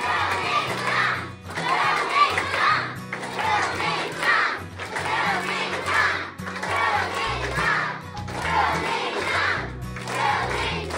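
A crowd of young schoolchildren chanting and shouting together in rhythm, a loud burst of voices about once a second, as they clap along.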